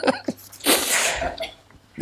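A man sneezing once, a single breathy burst about half a second in, preceded by a few short clicks.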